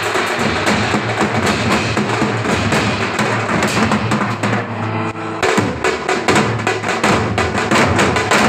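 A street drum band of many drummers beating large steel-shelled drums and smaller snare-type drums with sticks in a fast, dense rhythm. The playing thins briefly about five seconds in, then the full beat resumes.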